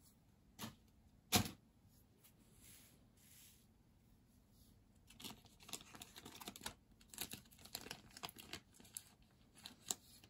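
Foil booster-pack wrappers crinkling under fingers as the packs are handled, a dense run of small crackles through the second half. Two light knocks come early, about half a second and a second and a half in.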